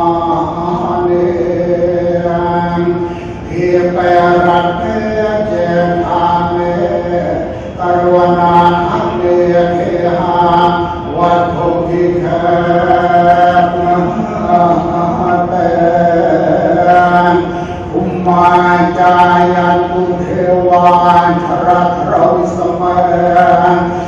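Buddhist chanting: voices held together on one steady low pitch, breaking off briefly for breath about three, eight and eighteen seconds in.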